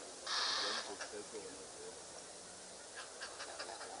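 A bird gives one harsh squawk, about half a second long, followed by a few short, high chirps near the end over soft background calls.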